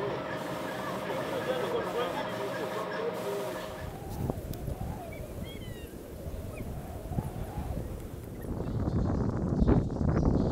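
Street workshop ambience: a steady machine hum with voices in the background. About four seconds in it changes abruptly to outdoor wind noise with a few faint bird chirps, growing louder near the end.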